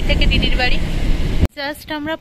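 Steady low rumble of road and engine noise heard inside a moving car on a wet highway, with voices faintly over it. About a second and a half in, the rumble cuts off abruptly and a woman's voice continues over a quiet background.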